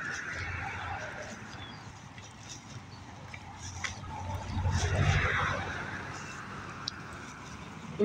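Outdoor background noise of a parking lot, rising to a louder swell of low rumble and hiss about halfway through, with a few faint clicks.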